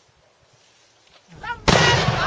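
A sudden loud explosion near the end, as a charge on the ground goes off in a cloud of white smoke, after a quiet stretch.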